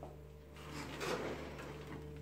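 Faint handling noise at a wooden handloom: a short stretch of soft rubbing and scraping about halfway through as the threads and loom parts are worked by hand, over a steady low hum.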